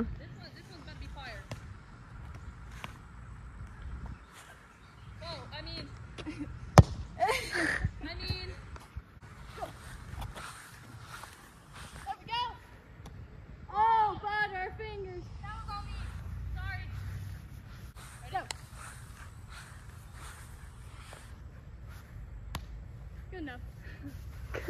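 Voices calling out in short bursts across an open field, with one sharp knock about seven seconds in, over a low uneven rumble.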